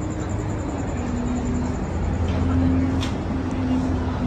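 Busy city street traffic: a steady low engine rumble from passing vehicles, with indistinct voices of passers-by. A brief click comes about three seconds in.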